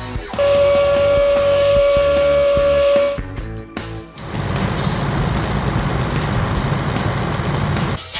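Cartoon sound effects over background music: a horn holds one steady note for about three seconds, then, after a short break, a steady engine rumble runs as the car-carrier truck drives in.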